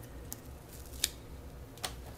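Three faint, sharp ticks, about three-quarters of a second apart, from small scraps of gold heat-reflective foil tape with woven fiberglass being handled between the fingers, over a low steady hum.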